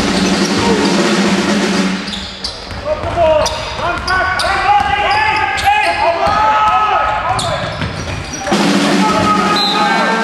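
Sounds of an indoor basketball game: a ball bouncing on a hardwood court with irregular sharp knocks, under voices in the hall.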